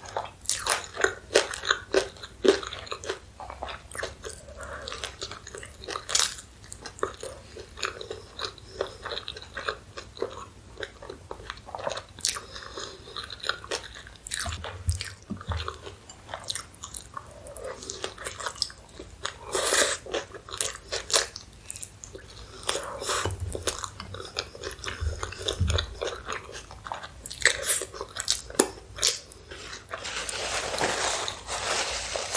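Close-miked eating: biting and chewing a chili hot dog, with many sharp, irregular clicks and wet mouth sounds.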